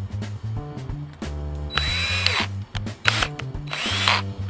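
Cordless drill run in short bursts, three times, the first and longest with a steady high whine, as a bit is fitted in its chuck, over steady background music.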